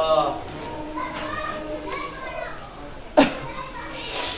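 Faint background chatter of children's voices during a pause at a microphone, with a man's voice trailing off just at the start. A single sharp click sounds about three seconds in.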